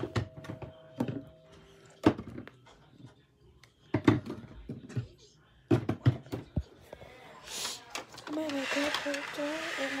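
A scatter of sharp knocks and thumps through the first seven seconds: handling noise from a phone being moved about close to its microphone. Near the end a girl's voice comes in.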